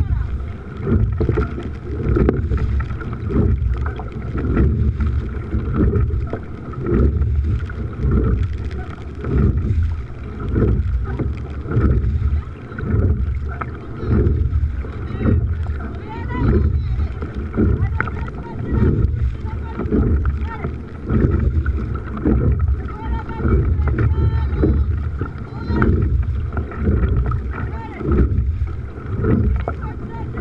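Coxed four-oar rowing boat under way: the crew's oar strokes make a regular surge about every second and a half, over a heavy rush of wind on the microphone.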